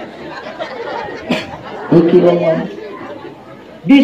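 Voices and chatter from an audience in a hall, with a short click a little over a second in and a man's voice holding a note about halfway through. Right at the end a man's voice starts a sung line.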